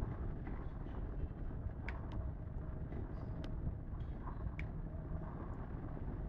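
Steady low background rumble, with a few faint clicks and taps as an iPod touch is slid and pressed into a plastic Peel 520 adapter case.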